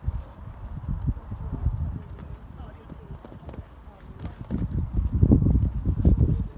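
Hoofbeats of a show-jumping horse cantering on sand footing, a run of dull low thuds that grow louder near the end.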